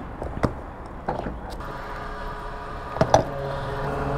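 Metal clicks and knocks of a motorcycle fuel-tank filler cap being opened and a fuel nozzle being handled, the loudest about three seconds in. A petrol-station fuel dispenser's pump hums steadily underneath, growing louder after that knock.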